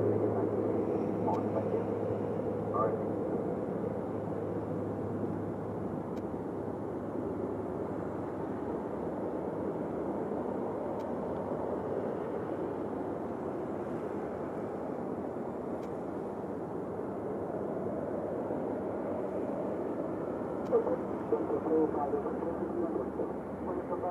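Twin-engine jet airliner's engines running steadily at taxi power, an even continuous rumble, with faint voices near the start and the end.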